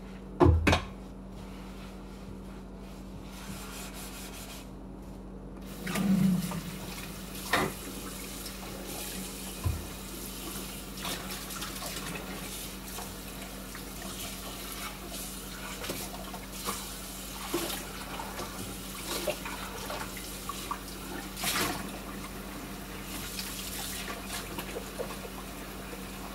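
Kitchen sink faucet running while dishes are washed and rinsed, with scattered clinks and knocks of dishware against the sink. Two loud knocks come right at the start, and the water comes on about five or six seconds in.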